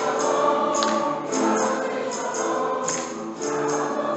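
Background music: a choir singing sustained notes over a tambourine's repeated jingles.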